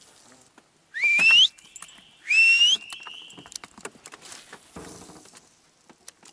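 A bird calling twice: two loud, rising whistled calls about a second apart, the second ending in a short steady note.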